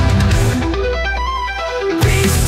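Suno-generated heavy metal track. From about half a second in, the drums drop away and a guitar plays a short line of single stepping notes over a held low bass note; the full band comes back in right at the end.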